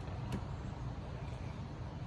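Faint steady outdoor background rumble, with one faint click about a third of a second in.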